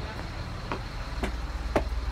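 Low, steady rumble of street traffic, with three light clicks about half a second apart.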